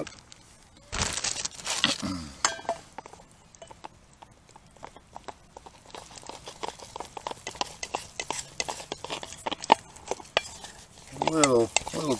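Flour rustling out of a bag into a small stainless steel bowl of melted butter, then a wooden stick stirring and scraping the flour into the butter for beurre manié, a fast run of light clicks and clinks against the metal bowl.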